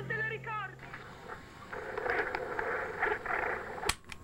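The song's last wavering note fades out within the first second. Faint, muffled murmur and hiss from a handheld microcassette recorder follow, and a single sharp click comes near the end.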